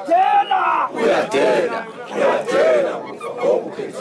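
A crowd of Zulu amabutho warriors chanting and shouting together in short repeated phrases, many men's voices rising and falling in unison.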